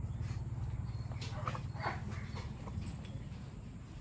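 Faint sounds of two Belgian Malinois dogs moving about on dry dirt and sniffing each other, with a few soft short noises over a low steady background rumble.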